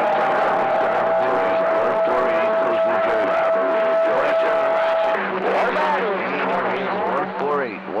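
CB radio receiver on channel 28 carrying a steady whistle of two close pitches for about five seconds over noisy, overlapping skip voices. The whistle cuts off and garbled voices come through over a low hum.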